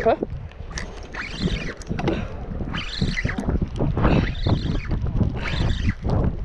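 Spinning reel being wound in against a hooked fish, with wind rumbling steadily on the microphone.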